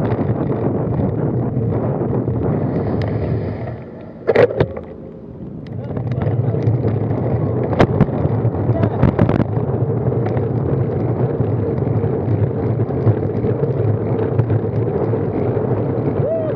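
Wind rushing over a bike-mounted camera's microphone, with tyre and road noise, while cycling slowly. The noise drops away for a couple of seconds about four seconds in, with a sharp knock as it drops, and a few clicks and knocks follow a few seconds later.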